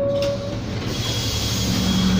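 New Flyer D40LF diesel transit bus running at a stop with a steady low rumble. About a second in, a steady hiss comes up over it.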